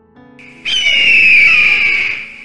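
A loud logo-sting sound effect breaks in over soft piano music: a sudden high tone gliding slowly down in pitch over a noisy wash, lasting about a second and a half.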